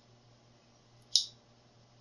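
One short, sharp metallic click about a second in, from a hook pick working the pins of a Master Lock No. 570 padlock under heavy tension. It comes as pin three is lifted and the core drops into a false set.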